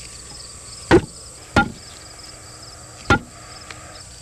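Sledgehammer blows on a wooden board laid across a metal double-ring infiltrometer ring, driving the ring into the soil. There are three heavy strikes, unevenly spaced: two close together about a second in, and one about three seconds in.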